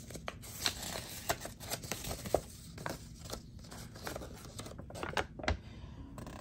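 A folded slip of paper being unfolded by hand, crinkling in a string of short, irregular crackles.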